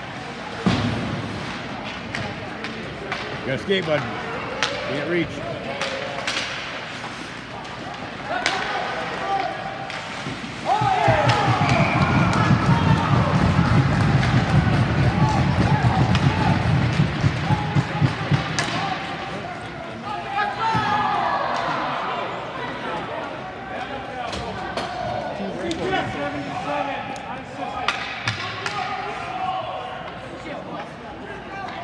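Ice hockey rink sounds: scattered knocks of sticks and pucks against the boards, with scattered shouts. About eleven seconds in, spectators break into loud cheering and yelling with rapid clapping and banging for about eight seconds, celebrating a goal.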